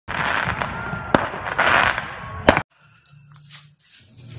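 Fireworks: a dense crackle of bursting sparks with two sharp bangs, about a second in and about two and a half seconds in. The sound cuts off abruptly just after the second bang.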